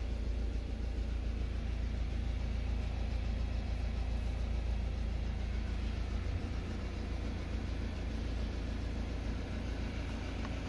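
Ford Transit Custom van's diesel engine idling steadily, a low hum heard from inside the cab.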